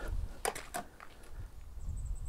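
Quiet outdoor ambience: a low rumble throughout, two faint clicks about half a second in, and a short, faint, high bird chirp near the end.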